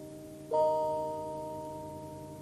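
A piano chord struck about half a second in, left to ring and slowly fade over the dying end of the previous chord.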